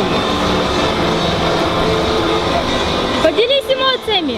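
A steady background din of distant voices and outdoor noise, then near the end a high-pitched voice calls out, its pitch rising, holding and sliding down.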